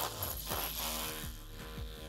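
Electric rotary hammer with a chisel bit chipping at a concrete block, its motor a faint steady buzz. Under it runs a soft beat of background music.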